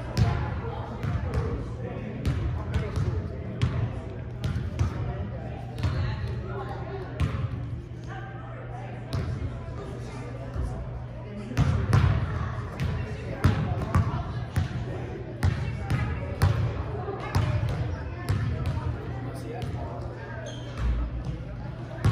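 Basketballs bouncing irregularly on a hardwood gym floor as players dribble and shoot, each bounce a sharp thud ringing in the large gym, over a murmur of voices from the bleachers.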